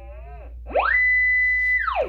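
Leica cable locator receiver's audio signal tone, its pitch following signal strength. About two-thirds of a second in it sweeps steeply up to a high steady tone, held for about a second, then falls away near the end: the peak response as the receiver passes over the sonde.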